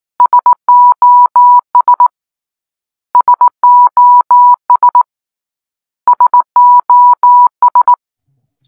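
Electronic beep tone keying SOS in Morse code (three short beeps, three long, three short), played three times about three seconds apart.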